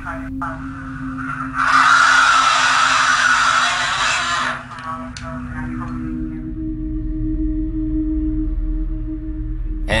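A loud, raspy, hissing voice-like burst lasting about three seconds, beginning a couple of seconds in, over a steady low drone: the purported ghost voice at the end of a night-vision recording. From about halfway, eerie music takes over as sustained droning tones over a low rumble.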